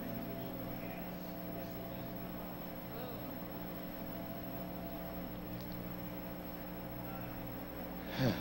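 Low, steady electrical hum with faint hiss from the recording's sound system: room tone with no speech.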